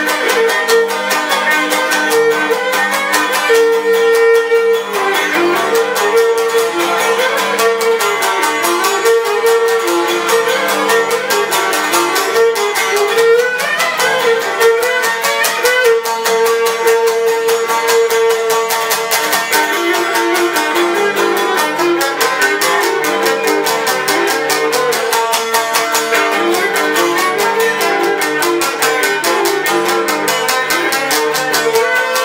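Cretan lyra playing a syrtos dance melody with held, ornamented notes, over steady rhythmic strumming on a laouto.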